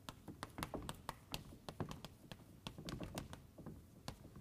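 Chalk tapping and scratching on a blackboard as words are written, a quick, irregular run of sharp little taps.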